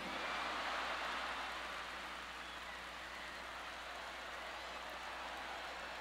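Live comedy audience laughing and applauding in response to a punchline. The crowd noise is loudest at the start and slowly dies down to a low steady wash.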